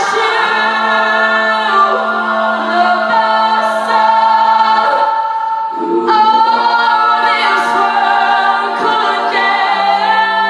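An all-female a cappella group singing: a lead voice over sustained backing chords and a held low note. The chord breaks off briefly about five and a half seconds in and comes back.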